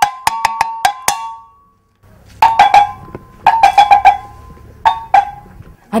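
A metal double gong of the cowbell kind, like the Igbo ogene, struck by hand in quick runs of ringing strikes at two pitches. About six strikes come in the first second, then a short pause, then three more groups of strikes. It is a town crier's gong, sounded with a village announcement.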